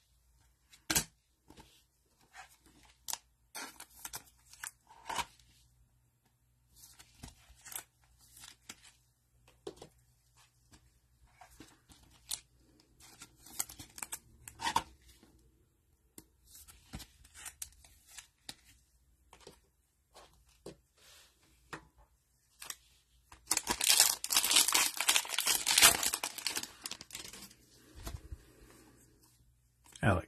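Gloved hands handling trading cards, with scattered soft clicks and rustles as the cards slide and are sleeved. About two-thirds of the way in, a foil trading card pack is ripped open by hand, a loud tearing and crinkling for about three seconds.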